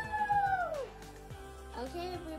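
A long, drawn-out meow-like call, held steady and then sliding down in pitch to end just under a second in, over quiet background music; a quieter stepping melody begins near the end.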